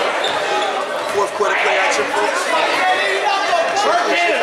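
Basketball game sounds in a gymnasium: several voices from players, benches and spectators overlapping throughout, with a basketball bouncing on the hardwood court.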